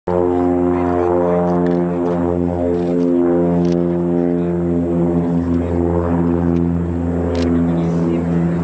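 Formation of UTVA Lasta 95 trainers flying past, their six-cylinder piston engines and propellers giving a loud, steady pitched drone with a slight waver from the several aircraft.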